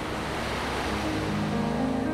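Sea surf washing onto a beach, a steady rush of breaking waves. Soft held music notes come in over it about halfway through.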